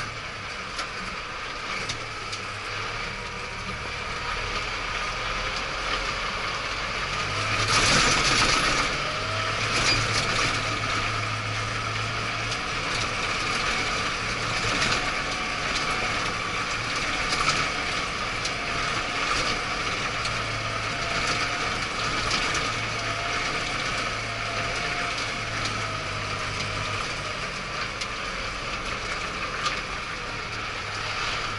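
A 75-horsepower ISEKI tractor being driven, heard from inside its cab: a steady engine and drivetrain whine with light rattling of the cab. About eight seconds in there is a brief, louder rush of noise.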